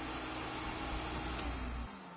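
Shop vacuum running through a hose clamped to a clogged foil dryer duct, pulling out loosened lint; a steady rushing noise with a low rumble. Near the end it is switched off and starts to wind down.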